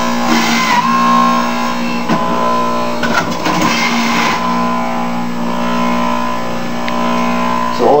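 Electric juicer motor running with a steady, even-pitched hum. There are two brief rougher patches, about half a second in and again around three to four seconds in.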